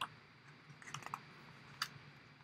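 A few faint clicks in a quiet room: one at the start, a small cluster of soft ticks about a second in, and a sharper click near the end.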